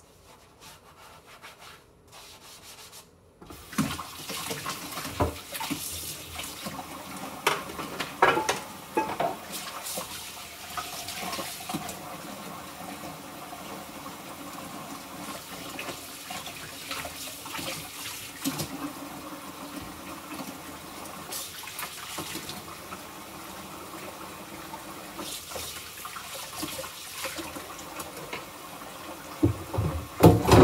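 Kitchen sink tap turned on about three and a half seconds in, water running steadily into the sink as dishes are washed by hand. Scattered clinks and knocks of dishes against each other and the sink sound over the water.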